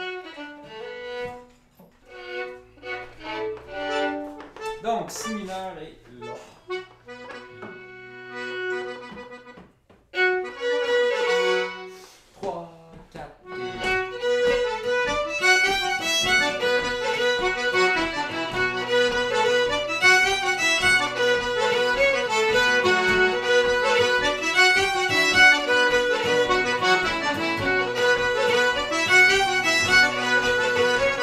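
Fiddle and diatonic button accordion play scattered, broken-off notes with pauses for the first dozen seconds. Then, about 14 seconds in, the trio of fiddle, button accordion and acoustic guitar starts a traditional Québécois march together and plays on steadily.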